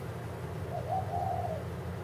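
Steady low room hum with a faint single tone in the middle, about a second long, that rises slightly and falls.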